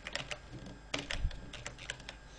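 Typing on a computer keyboard: several quick keystrokes in short bursts as a short word is entered.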